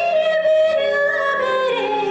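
A woman singing solo into a handheld microphone, holding one long note that rises at the start and slides down near the end.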